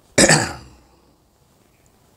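A man clears his throat once with a short, loud cough into his hand, about a quarter second in.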